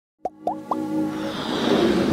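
Electronic logo-intro sting: three quick rising plops about a quarter second apart, then a held chord that swells and builds.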